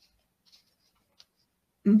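Mostly near silence, with a few faint rustles of paper being handled and a soft click. A woman starts speaking just before the end.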